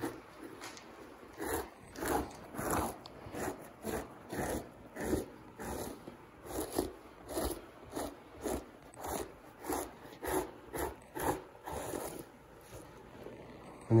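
Two-handled fleshing knife scraping the thin membrane off a skinned lynx pelt on a fleshing beam, in repeated downward strokes a little under two a second that stop near the end.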